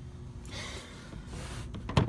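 Handling noise over a low steady hum: a soft rustle, then a single sharp tap near the end as a hand comes down on a plastic tool case.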